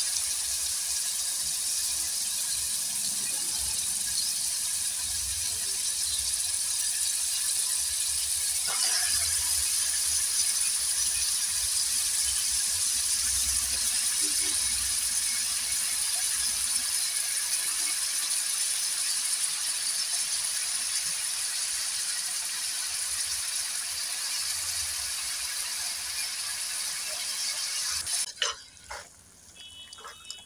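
Raw minced mutton frying in hot oil and onion-tomato masala in an aluminium pot: a steady sizzling hiss with fine crackle, cutting off near the end.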